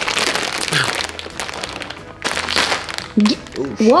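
Plastic bag crinkling as it is pulled apart by hand, bursting open about two seconds in and scattering its contents. Laughter follows near the end.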